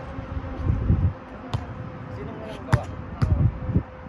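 A volleyball struck by hands and forearms in a pepper passing drill: sharp slaps of the ball about every second, the loudest near three seconds in. Low rumbling thuds come in between.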